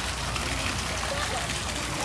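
Small pond fountain splashing steadily, its jet of water falling back into the pond.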